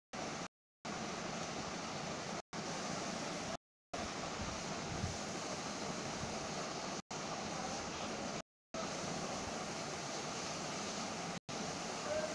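Steady hiss of a recorded phone line with nobody talking, cutting out to dead silence for a moment about six times.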